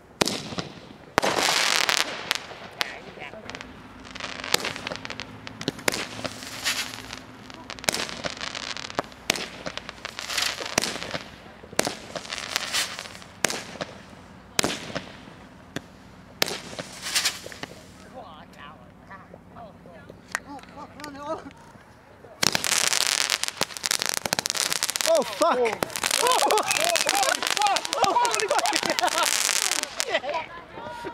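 Consumer fireworks going off: an irregular string of sharp bangs and pops, about twenty over the first eighteen seconds, each with a short echo. About twenty-two seconds in, the sound gives way to a loud, dense, continuous crackling that runs on.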